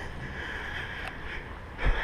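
Steady, quiet outdoor background hiss with a low rumble, and a soft thump near the end.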